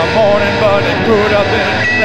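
End of a live synth-pop song: the drums have dropped out and a held keyboard chord rings on under wavering vocal shouts.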